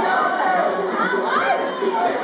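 A crowd of young people shouting and cheering, many voices rising and falling over one another.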